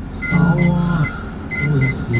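Electronic sounds from the vehicle's dashboard audio: short high beeps repeating irregularly over low held tones, a noise the driver wants silenced.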